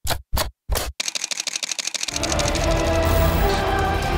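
Camera shutter sound effects: a few separate sharp clicks in the first second, then a rapid run of clicks. Intro music comes in about two seconds in.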